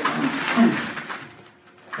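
A man's voice, a few unclear words in the first second, then a short quiet pause before speech resumes.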